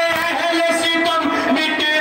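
A man chanting a noha, a Shia lament, into a microphone over a PA, his voice drawn out in long, wavering notes with no break.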